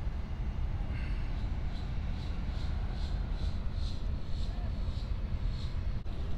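A steady low outdoor rumble, with a faint high chirp repeating about two to three times a second from about two seconds in until near the end.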